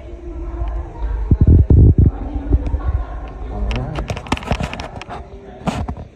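Several heavy, dull thumps close to the microphone about a second in, over a low rumble, then people's voices talking with sharp clicks from about halfway through.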